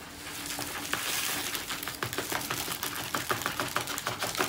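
Loose glitter sliding off a curled sheet of card and pouring into a small tub: a steady hiss with many small ticks, which grow thicker in the second half.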